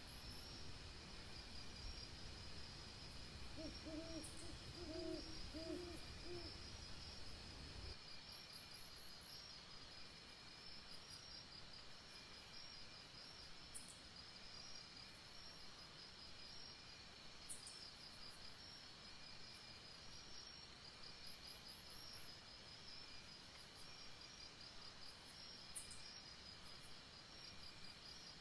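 Faint, steady chirping of night insects, with a short series of low hoots from an owl about four seconds in.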